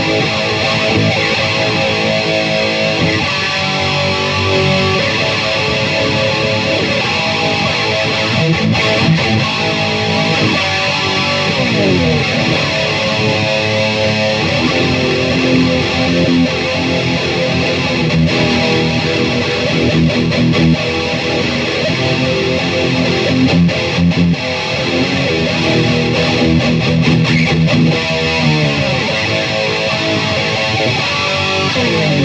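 Solo electric guitar riffing and jamming, loud and continuous, with a pitch dive about twelve seconds in and another slide near the end.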